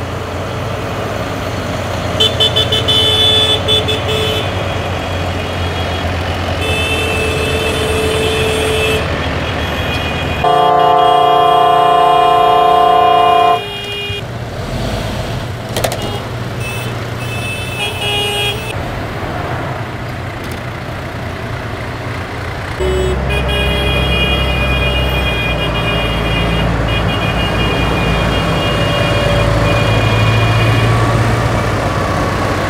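Convoy of tractors and lorries passing with their diesel engines running, a low continuous rumble. A long, loud vehicle horn blast of about three seconds sounds near the middle, and the engine rumble grows heavier over the last few seconds.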